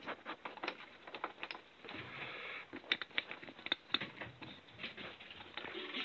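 Irregular light clicks and rustles of cables and connectors being handled as a Cat5 network cable is plugged back into the control unit.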